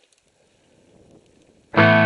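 Background music: after a faint, slowly rising sound, a loud distorted electric guitar chord comes in abruptly near the end and is held, opening a rock song.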